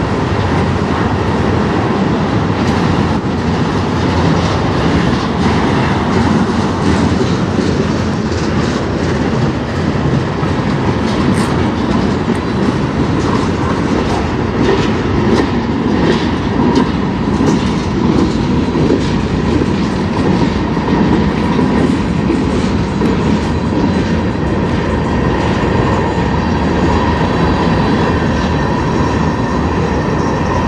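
Freight cars of a manifest train rolling past: a steady loud rumble of steel wheels on rail, with repeated clicks and clanks as the wheels pass over rail joints and a faint steady whine underneath.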